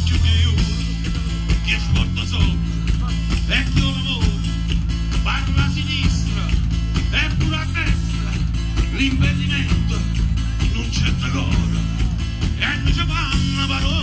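Live band playing amplified music through a PA, heard from the crowd: a woman singing over accordion, guitar and drums, with a strong low bass line.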